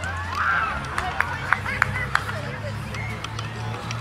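Indistinct voices and chatter of several people, over a low steady hum that may be faint music, with a few sharp clicks or taps in the middle.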